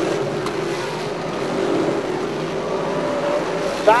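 Small-block V8 engines of two 358 dirt modified race cars running hard side by side at racing speed: a steady, even engine drone.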